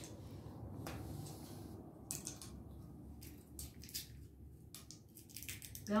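Cracked walnut shells being broken apart by hand to pick out the kernels: small, irregular cracks and clicks of shell.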